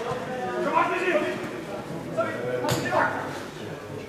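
Indistinct talk of spectators near the camera, with one sharp knock a little before three seconds in.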